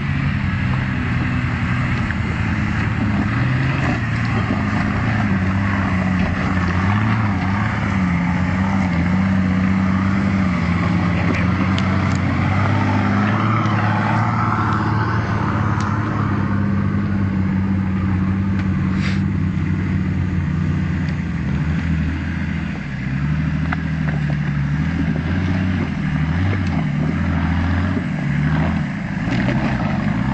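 4x4 SUV engine working under load as it climbs a steep, rocky off-road track, its pitch rising and falling with the throttle. There is a single sharp click about two-thirds of the way through.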